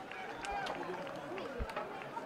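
Pitch-side ambience on a field hockey pitch: faint, indistinct talk among players, with a few short knocks.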